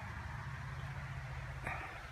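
Steady low background rumble with no clear event, and a brief soft sound near the end.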